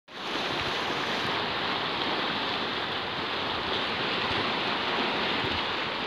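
Sea surf washing against a rocky shore: a steady, even rush of water noise.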